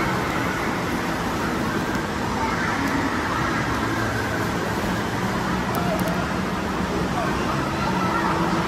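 Steady din of an indoor water park pool: water splashing and running, with indistinct voices of people playing in the pool, under a low constant hum.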